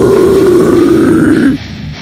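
Death metal guttural vocal growl held on one low note over the heavy metal backing. It cuts off about one and a half seconds in, and the music drops to a much quieter stretch.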